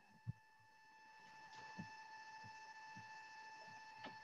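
Near silence on a video-call audio line: a short click just after the start, then a faint background with a steady thin electrical whine from about a second in.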